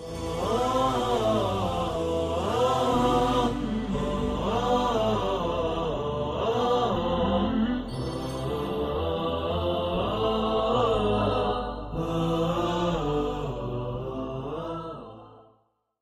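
Closing music: a chanted vocal melody with gliding, ornamented phrases over a low sustained drone, fading out near the end.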